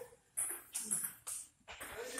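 Table tennis rally: a celluloid ball struck back and forth, a series of short sharp knocks, about two to three a second, as it hits the paddles and the table.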